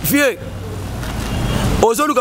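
Low rumble of road traffic, a vehicle going by on the street, growing steadily louder for over a second and then cutting off sharply near the end.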